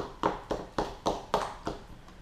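Metal fork mashing sugar-macerated orange slices against the side of a plastic bowl, tapping on it in a steady rhythm of about four strokes a second.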